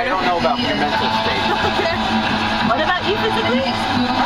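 Indistinct chatter of several people inside a moving limousine, over background music and the steady drone of the car's road noise.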